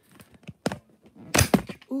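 Handling noise as the camera is grabbed and moved: a scatter of light clicks and knocks, with the loudest two thuds about one and a half seconds in.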